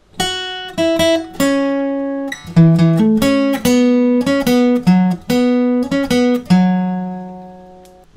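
Acoustic guitar played without a capo, picking a single-note lead riff high on the neck, one note at a time with a hammer-on. The last note rings out and fades over the final second and a half.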